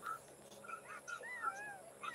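Faint, high-pitched animal calls: a few short ones, then a longer wavering call rising and falling in pitch about a second in.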